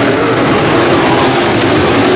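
A pack of IMCA Modified dirt-track race cars running together, their V8 engines blending into one loud, steady drone.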